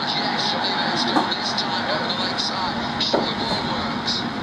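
Outdoor ambience on an open cricket field: a steady noisy rush, with faint indistinct voices and repeated short high-pitched chirps about two or three times a second.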